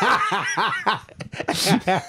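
Two men laughing into handheld microphones: a quick run of short 'ha' pulses over the first second, then breathier laughs.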